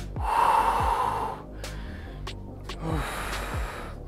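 A man breathing hard after an exercise set: one long, heavy exhale through the mouth just after the start, and a second, weaker one about three seconds in.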